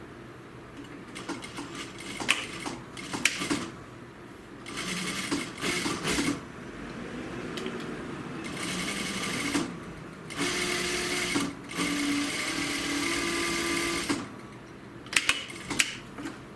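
Juki industrial sewing machine stitching through jacket fabric in short stop-start runs, the longest lasting about four seconds in the second half. A few sharp clicks come just before the end.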